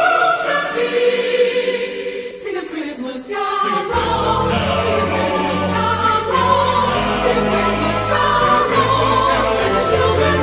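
Choral Christmas music: a choir sings, thins out briefly about three seconds in, then a fuller orchestral accompaniment with bass comes in about four seconds in.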